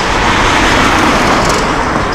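Road traffic noise: a steady rushing sound of passing vehicles that swells slightly in the first half.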